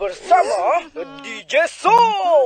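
A run of short whimpering, yelping cries, dog-like, each sliding up and down in pitch, ending on a loud falling one.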